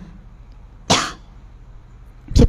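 A single short cough about a second in, over a low steady hum of room and microphone noise.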